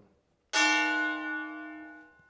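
A single gong signal struck about half a second in: a bell-like tone that fades away over about a second and a half. It marks the start of a 60-second timed challenge.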